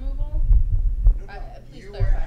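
Low rumbling thumps of camera handling noise as the video camera is moved and re-aimed, loudest in the first second and again at the end. Faint voices from the room sound under it.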